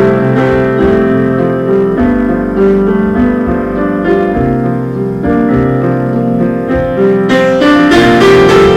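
Yamaha grand piano playing sustained chords over a low bass line as the band plays. Near the end, brighter cymbal strikes join in.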